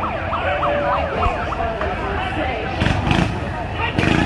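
A siren yelping in fast rising-and-falling sweeps for about the first second, then holding a steadier tone, over crowd chatter; a louder noisy burst comes about three seconds in.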